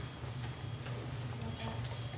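A few faint clicks and rustles of sample pieces being handled in a plastic bag on a table, over a steady low room hum.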